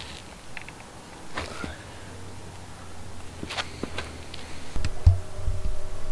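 A few light clicks and knocks from a telescope and its mount being handled and aimed by hand, over a faint low hum; a faint steady tone comes in near the end.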